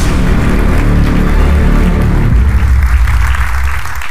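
Electronic intro music with deep, sustained bass, growing brighter toward the end and then cutting off suddenly.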